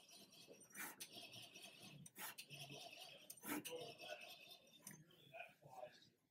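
Near silence, with a few faint clicks and soft rubbing as the table belt of a powered-off Epilog laser engraver is pulled by hand to lower the jammed table.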